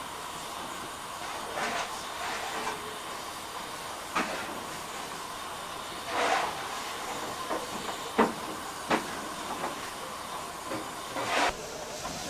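Steady steam hiss from a standing steam locomotive, with a few short sharp clicks and knocks scattered through it.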